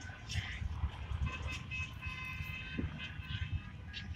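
An SUV driving past on the road, a low, uneven rumble of engine and tyres, with faint voices in the background.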